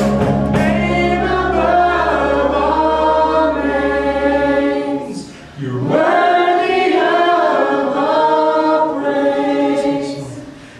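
A church praise band and singers performing a worship song. The drums and bass drop out about five seconds in, and after a brief breath the voices carry on with little or no accompaniment.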